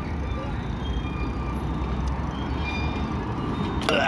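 Bicycle rolling over city pavement with a steady low rumble of tyres, wind and traffic. Near the end comes a sharp bang as the bike drops hard off a curb, followed by a brief high rising and falling sound.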